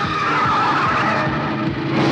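Motorcycle engine revving, its pitch rising and falling in the first second.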